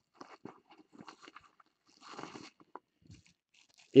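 Hands handling cards and packaging: faint scattered clicks and rustles, with a brief crinkly rustle about two seconds in.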